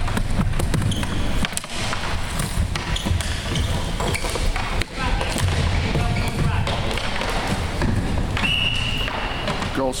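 Floor hockey game noise on a hardwood gym floor: players calling out, shoes on the floor and repeated sharp knocks of sticks and ball. A single steady high tone lasting about a second sounds near the end.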